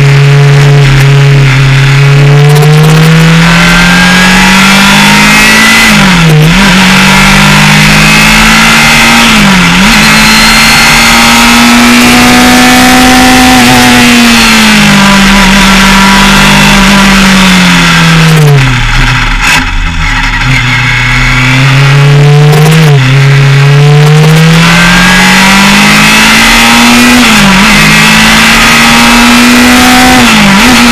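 Engine of a Formula Estonia 21 single-seater race car, heard loud from onboard, revving up through the gears with a sharp drop in pitch at each upshift, about 6 and 10 seconds in and again late on. In the middle the pitch falls steadily as the car slows and goes briefly quieter before the engine picks up again.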